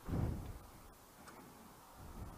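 Faint footsteps of a person in boots walking on cobblestones: a dull step at the start, then a light tick about a second later.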